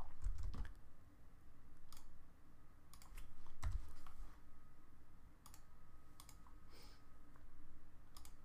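Scattered computer keyboard keystrokes and mouse clicks, about ten sharp single clicks spread unevenly over several seconds.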